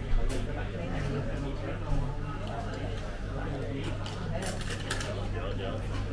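Busy restaurant ambience: diners chattering indistinctly over a steady low hum, with a few sharp clicks of chopsticks and a spoon against a ceramic noodle bowl, the loudest near the start and about two seconds in.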